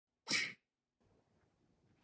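A single short burst of hissy noise, about a quarter of a second long, shortly after the start.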